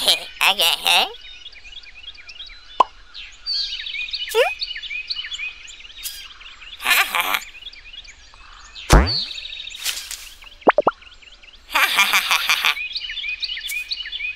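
Cartoon sound effects: a string of short pops and bright bursts as coloured apples appear one by one, a steep rising slide-whistle-like glide about nine seconds in, and a few short beeps, over steady background chirping of cartoon birds.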